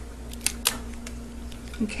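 Kitchen shears cutting through a lobster tail's shell: a few sharp clicks, the clearest about half a second in, over a steady low hum.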